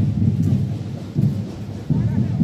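Wind buffeting the microphone: irregular low rumbling gusts that swell and fall several times.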